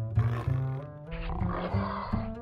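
A big cat roaring twice, the second roar longer, laid as a sound effect over music with plucked and bowed low strings.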